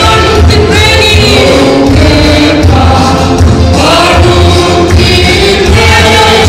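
A large church congregation singing a hymn together in Mizo, many voices at once over a strong, pulsing bass accompaniment.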